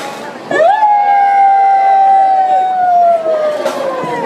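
A single voice holding one long high call: it swoops up about half a second in, then holds and slowly sinks in pitch over about three seconds.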